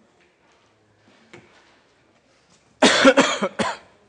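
A person coughing: a quick run of about three loud coughs near the end.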